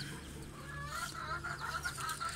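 A hen clucking softly with her chicks, and the chicks peeping faintly in short chirps.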